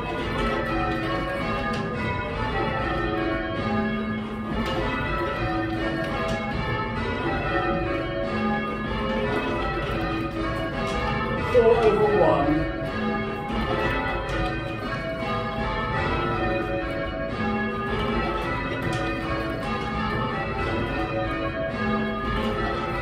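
Eight church bells rung full-circle in call changes, heard from the ringing chamber: a steady, evenly paced sequence of strikes. A brief voice cuts in about halfway through.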